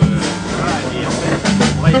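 Live jazz band playing, with drum kit strokes and cymbals over sustained low bass notes.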